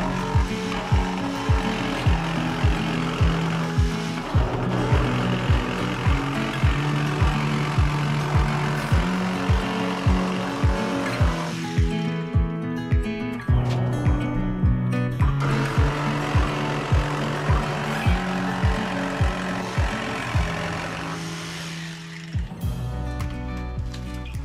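Background music with a steady beat of about two a second, over which a cordless jigsaw cuts the van's sheet-metal side panel in two spells, a long one a few seconds in and a shorter one after a pause in the middle, trimming the edge of the opening.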